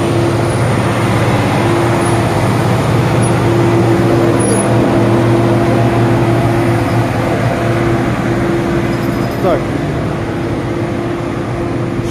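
A vehicle engine running close by: a steady, loud hum that holds one pitch throughout.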